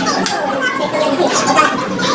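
Wet, close-up chewing and eating sounds, with the chatter of a busy restaurant behind.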